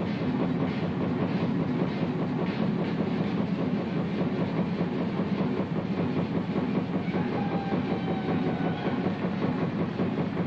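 Jazz drum kit played live in a fast, dense, even pattern of strokes that keeps going without a break. A faint held note sounds over it about seven seconds in.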